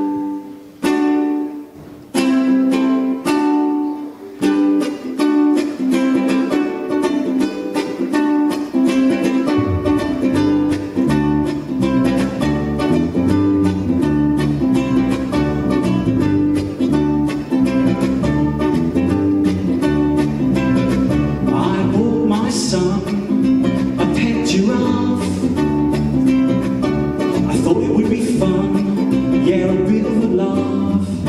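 Ukulele strummed live, a few separate chords at first and then a steady strumming rhythm; an electric bass guitar joins about ten seconds in.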